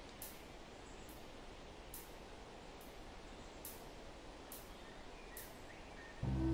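Faint outdoor nature ambience: a steady soft hiss with a few distant bird chirps and a faint high tick about once a second.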